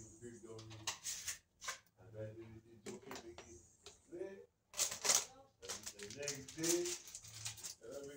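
A man talking in a small room, with brief clicks and rustles between his words; the loudest comes about five seconds in.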